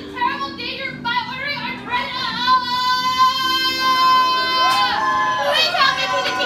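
High voices singing in short phrases, then one long held note from about two seconds in that slides down in pitch near the end.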